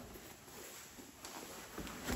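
Faint rustling and handling noise of a hiking shoe being pulled onto a socked foot and its laces gathered, with a soft tap about a second in.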